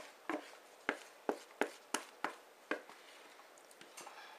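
A wooden spoon knocking against a plastic mixing bowl as cake batter is scraped out into a pan. About three sharp taps a second, fading out near the end.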